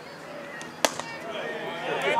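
A single sharp pop about a second in: a 91 mph fastball smacking into the catcher's leather mitt.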